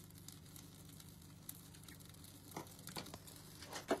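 Small kindling fire crackling faintly in the open firebox of a Cub Mini woodstove, with scattered sharp pops and a few louder ones near the end.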